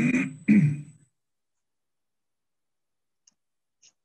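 A person's short laugh in two quick bursts within the first second, followed by two faint clicks near the end.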